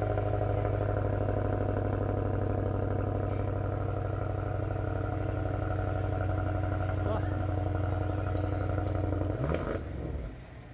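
BMW X5 M's 4.4-litre twin-turbo V8 idling steadily through its quad exhaust, then dying away just before the end.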